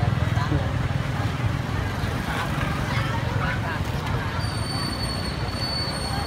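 Busy night-street hubbub: a steady low rumble of traffic with scattered voices of people nearby. From about four seconds in, a thin, high, steady whine joins in.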